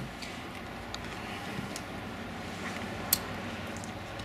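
A few faint clicks, with one sharper click about three seconds in, as a digital multimeter's rotary selector dial is turned. Steady room noise runs underneath.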